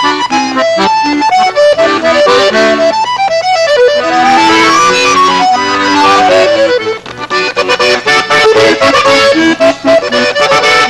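Two accordions playing a duet: a quick melody over sustained chords, with a run of notes climbing and then falling back about halfway through.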